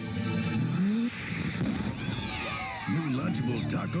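Soundtrack of a 1990s TV commercial: music with a note that slides upward, then a noisy stretch of quick rising and falling whistle-like sound effects, with a voice coming in near the end.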